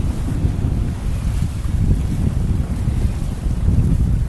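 Wind buffeting the microphone on the deck of a sailing yacht under sail, a steady gusty rumble, with the rush of the sea along the hull beneath it.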